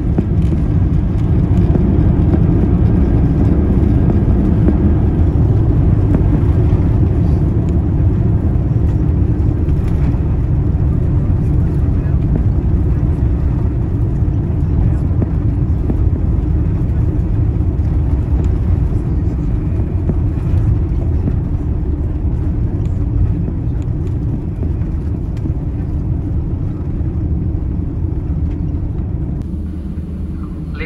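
Airbus A350-900 landing rollout heard from inside the cabin: a loud, steady low roar from the jet's engines and its wheels on the runway, with the wing spoilers raised. The roar eases off gradually over the last several seconds as the aircraft slows.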